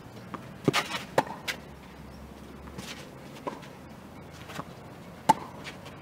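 Tennis ball struck by rackets during a rally on a clay court: sharp hits a second or two apart, the loudest about five seconds in with a short ringing ping, and softer ball bounces and footsteps between them.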